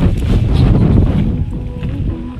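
Wind blowing across the microphone, strongest in the first second or so and easing near the end.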